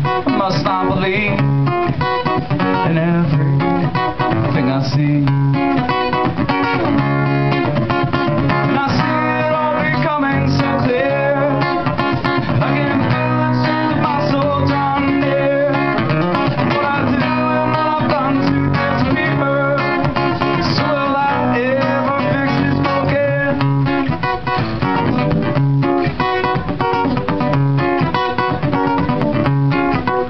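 Steel-string acoustic guitar strummed steadily in a live solo song, with a man's singing voice at times.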